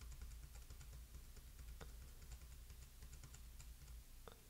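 Faint, rapid computer keyboard key presses, a quick run of light clicks repeated over and over as the backtest chart is stepped forward, over a low steady hum.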